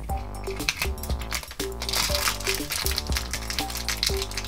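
Background music with a steady bass line, over sharp plastic clicks from a small plastic toy basket being opened and the crinkling of a foil blind bag being torn open.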